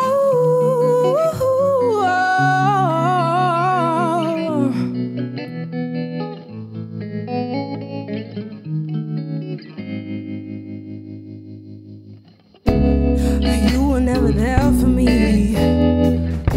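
Live pop/R&B band: a female lead singer holds long, wavering notes over electric guitar and bass. About five seconds in, the voice drops out and the electric guitar plays alone, fading away. Then the full band, with drums and bass, comes in suddenly and loudly with the singing, about three seconds before the end.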